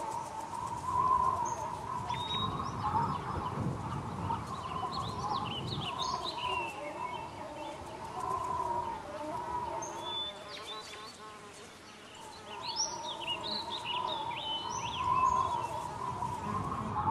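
Several small birds chirping and calling throughout, over a steady wavering hum and a low rumble.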